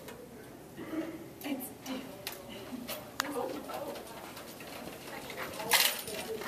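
Low murmur of voices in a hallway, with a few light clicks scattered through it and a brief, loud rustling burst near the end.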